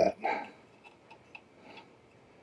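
A few faint, light clicks and taps of a 3D-printed carbon-fibre PLA fan duct being handled and fitted into place on a printer's print head.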